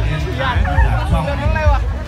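Crowd babble and voices over loud music, with a dense low rumble underneath.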